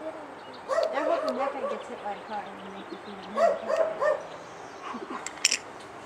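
A dog barking and yipping in two short runs, about a second in and again about three and a half seconds in, with a sharp click near the end.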